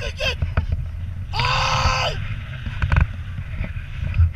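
Wind buffeting the camera microphone on a tandem paraglider during steep banking turns, with a person's long, high yell starting about a second and a half in. The yell holds steady for nearly a second, then falls away.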